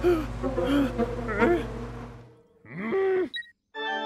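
A cartoon character's short wordless vocal sounds, several quick ones and then a single longer one near the end, over a steady low hum that fades out about halfway through. Music comes in just before the end.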